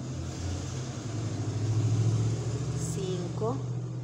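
Low engine rumble of a passing motor vehicle, swelling to its loudest about halfway through and then easing off.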